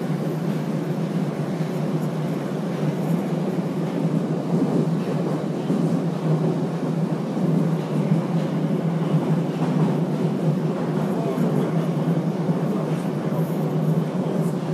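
Moscow Metro train running between stations, heard inside the car: a steady, low rumble of wheels and motors that does not change.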